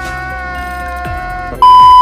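Comedy meme sound effects: a long, slowly falling wailing cry, cut off about one and a half seconds in by a very loud, steady, high-pitched test-card beep.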